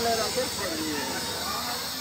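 A steady hiss with several people's voices talking underneath.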